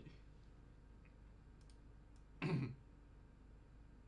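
A few faint clicks, then one short, loud vocal sound from a man about two and a half seconds in, over quiet room tone.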